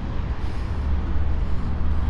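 Harley-Davidson Milwaukee-Eight 114 V-twin idling steadily, a low even engine sound with no revving.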